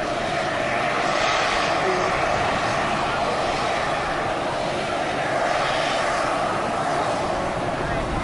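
Steady roaring hiss of superheated steam venting from a small geyser beside a constantly boiling hot-spring pool.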